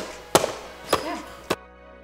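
Three sharp taps or knocks, about half a second apart. After the third, soft background music starts suddenly about one and a half seconds in.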